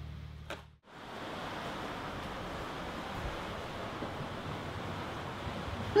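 Steady, even rush of wind and sea aboard a sailing catamaran under way. In the first second a low steady hum cuts off abruptly.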